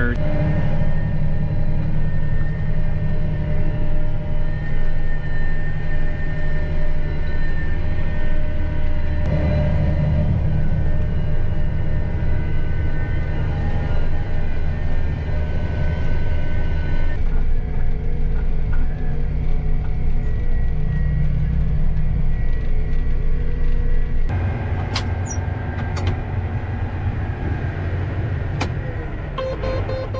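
Large John Deere diesel engine running steadily, heard from inside the cab. It comes as several joined stretches whose drone changes abruptly a few times, with a few sharp clicks near the end.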